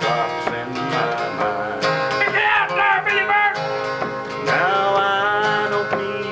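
Acoustic guitar strummed while a man sings a slow country song, his voice wavering on long held notes.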